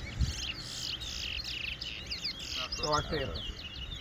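Caged male towa-towa (chestnut-bellied seed finch) singing a fast, twittering warble of quick rising and falling notes that runs on without a break.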